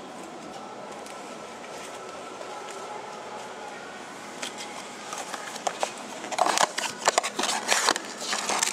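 Steady background hum, then from about four and a half seconds in scattered clicks that thicken near the end into loud, irregular crinkling and clicking: a small cardboard mystery box and its plastic-wrapped prize being handled and opened.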